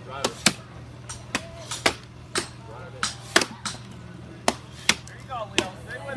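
Axes striking into horizontal wooden blocks in an underhand chop: two choppers working at once, giving about ten sharp chops at an uneven rhythm.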